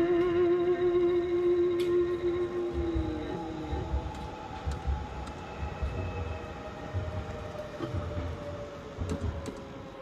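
Hollow-body electric guitar (Harley Benton Bigtone) letting a long note ring with a wavering vibrato, which bends down a few seconds in. Higher sustained tones then die away slowly. Faint low rumbles sit underneath.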